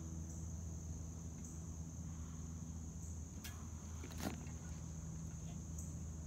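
Insects calling steadily in a high-pitched drone over a low steady hum, with two short sharp clicks about three and a half and four seconds in.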